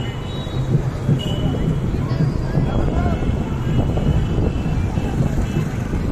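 Busy street traffic running steadily, mixed with voices of people nearby. There are two short high beeps, one at the start and another about a second in.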